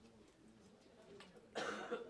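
A person coughs once near the end, a short noisy burst over faint room noise.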